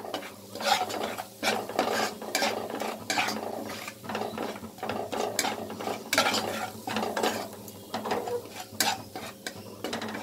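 Steel spatula scraping and stirring spice paste around a nonstick kadai, with repeated scrapes and knocks against the pan about once or twice a second. A light sizzle of the paste frying in oil runs underneath.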